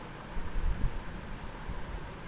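Low rumbling noise on the microphone, with a couple of faint clicks about a quarter of a second in.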